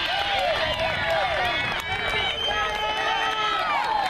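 Several high voices chanting and cheering at once in overlapping, drawn-out calls, typical of softball players cheering on a teammate.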